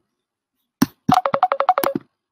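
Computer ringtone for an incoming video call: a quick run of short beeps, about ten a second, alternating between two pitches, starting about a second in. It is preceded by a sharp click.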